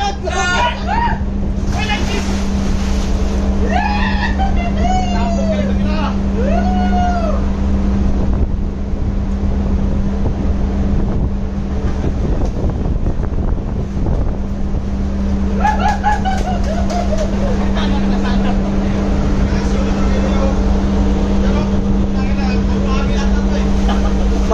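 Steady low drone of a ship's engines and machinery, with water splashing in the pool and voices calling out a few times.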